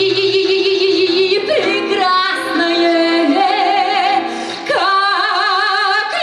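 A woman singing long, wordless held notes with strong vibrato, sliding between them and rising to a higher held note near the end, over guitar accompaniment.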